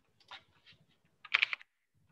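Computer keyboard typing: a few scattered keystrokes, then a quick, louder run of keystrokes about a second and a half in.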